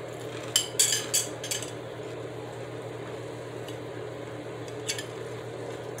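A metal fork clinking against a ceramic plate: a few short sharp clicks in the first second and a half and one more near the end, over a steady low hum.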